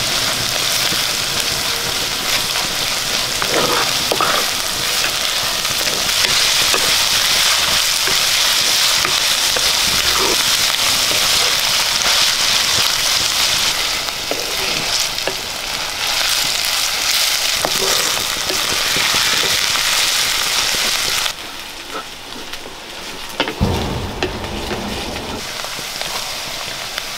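Chopped onion and green chillies sizzling in hot oil in a clay pot, stirred and scraped with a wooden spatula. The sizzle quietens somewhat about three-quarters of the way through.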